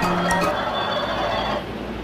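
Electronic children's learning book playing a tune of held notes that stops about half a second in, leaving only a faint background.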